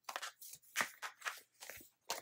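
Paper rustling and crinkling as the pages and sheets of a sticker book are handled and leafed through: a run of short, irregular crisp sounds.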